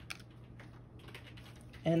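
Light clicks and taps of small white word cards being picked up and handled on a tray, with one sharper click near the start, over a faint low hum.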